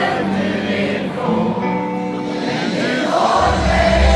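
Pop-rock band playing live in a stadium, heard from inside the audience, with the crowd singing along in a mass chorus over held chords. The deep bass drops out and comes back in strongly near the end.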